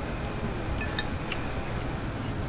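A metal spoon scraping and clinking lightly against a ceramic plate while scooping up fried rice, with a few short clinks about a second in, over a steady murmur of room noise.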